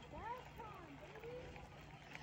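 A faint, far-off voice with rising and falling pitch, the words not made out, over a faint steady low hum.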